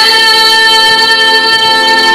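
A woman's solo voice holding one long sung note, amplified through a microphone, in a Bosnian sevdah song.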